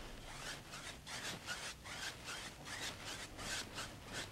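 Wide bristle paint brush scrubbing back and forth across a wet oil-painted canvas in short crisscross blending strokes, about three a second.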